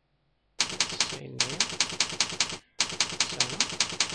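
Computer keyboard typing: a quick run of keystrokes, about seven a second, starting about half a second in with one short pause partway through.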